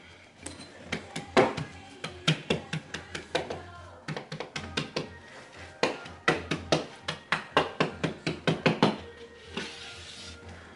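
Quick runs of sharp knocks and clicks as a carpet edge is trimmed and tucked in along a baseboard. There is a short lull near the middle and a dense run over the last few seconds.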